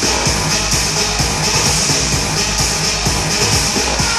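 Electronic dance music from a DJ set, with a steady kick-drum beat over a continuous bass line.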